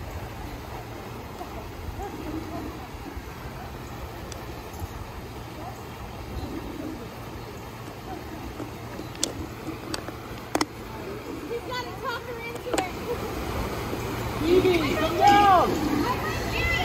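Water running steadily down a pool water slide and splashing into the pool, with voices in the background. A few sharp knocks sound a little past halfway, and near the end a child's high calls rise and fall over the water.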